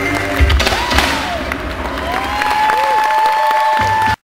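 Live stage-show music recorded from among the audience, with the crowd cheering. Heavy thuds come about half a second in, and a long held high note runs through the second half.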